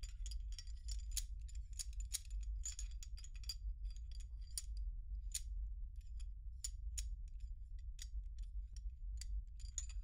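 Small metal parts of a field-stripped pistol being handled and fitted together, giving irregular light metallic clicks and taps with a faint ring. The clicks come quickly for the first few seconds, then more sparsely, over a steady low hum.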